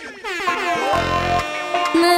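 Sound-system DJ effects in a reggae mix: a siren-like sweep falls away in pitch, then a short air-horn blast about a second in, with music continuing underneath.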